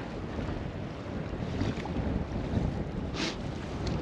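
Wind buffeting the microphone over the steady rush of a shallow stream, with a short scuff about three seconds in.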